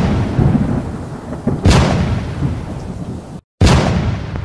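Thunder-like crashes from a sound-effects track played over stage loudspeakers, striking about every two seconds with a heavy rumble in between. The sound cuts out briefly just before the last crash.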